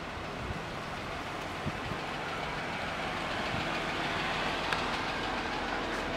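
Jeep Wrangler running, a steady low rumble and hiss that grows slowly louder, with a few faint ticks.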